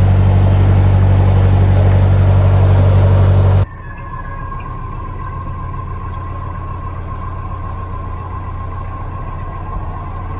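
Narrowboat diesel engine running loud and steady at the stern while the boat turns, cut off abruptly a few seconds in. A quieter steady engine rumble with a thin steady whine follows.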